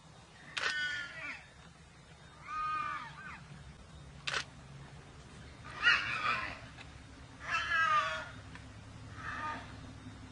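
Warthog squealing in distress while a leopard holds it by the neck: five short, high-pitched squeals, each falling in pitch, spaced about one and a half to two seconds apart. A single sharp click comes between the second and third squeal.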